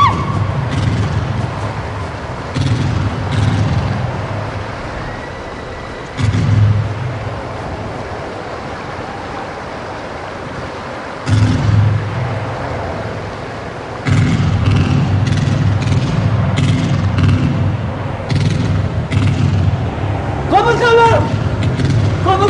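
A deep rumbling drone that comes in suddenly several times and sinks back between entries, with scattered clicks above it. Near the end a voice calls out in rising and falling glides.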